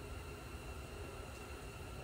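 Faint steady background noise: a low rumble with a light hiss and no distinct sounds.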